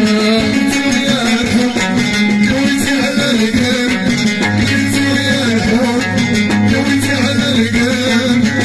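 Moroccan chaabi music: a watra, a plucked long-necked lute, playing a melody over a steady rhythm. A low bass note sets in about halfway.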